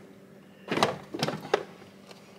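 A framed picture being shifted and set down against the back of a stove: a short scraping knock under a second in, then two lighter knocks.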